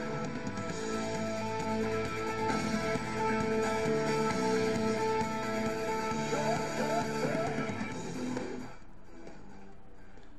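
Recorded music playing through a small retro mini amp speaker fed by a micro SD MP3 player. It drops much quieter near the end.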